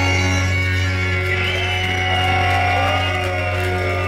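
A rock band with saxophone holds a sustained closing chord over a strong steady bass note, while voices in the crowd shout and whoop over it in rising and falling calls.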